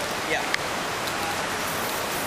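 Steady hiss of outdoor street background noise, with a faint voice and a single sharp click about half a second in.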